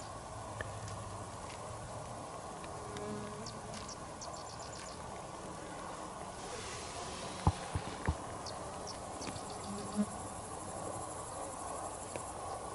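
Night-singing insects chirping in short, quick pulsed trains over a steady background hiss, with a few soft knocks about midway and again later.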